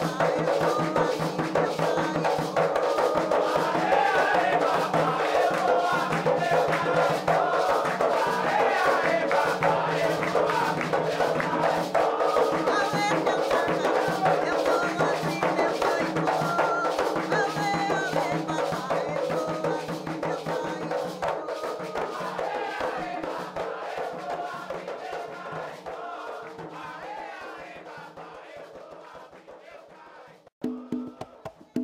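Field recording of a traditional Jurema ritual chant (ponto): many voices singing together over dense percussion, fading out gradually over the last ten seconds or so.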